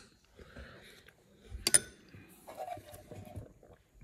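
A single sharp clink of a metal spoon against a ceramic bowl, a little under two seconds in, among faint handling noise.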